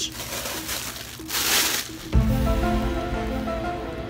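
Laptop electronic chime about halfway in, a set of steady tones held as one chord. It played on its own, with no one touching the laptop. Before it there is a short burst of breathy hiss.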